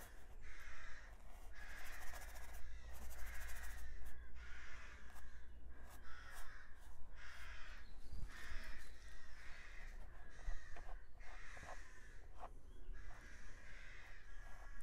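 Crows cawing outside in a long series of harsh calls, about one and a half a second.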